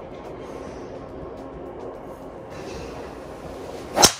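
Steady background hum, then right at the end a single sharp crack of a driver's clubhead striking a golf ball.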